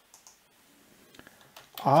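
Computer keyboard keys clicking as someone types, a few faint, uneven keystrokes, with a man's voice starting near the end.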